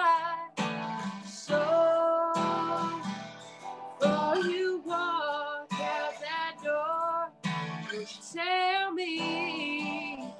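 A woman singing a country song to her own strummed acoustic guitar, holding some notes with a clear waver.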